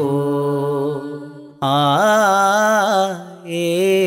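Malayalam folk song (nadan pattu): a singing voice holds long, wavering notes. The note fades out about a second in, and a new held note begins about a second and a half in.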